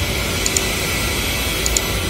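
Steady low rumbling outdoor background noise with no clear pitch, and a couple of faint ticks.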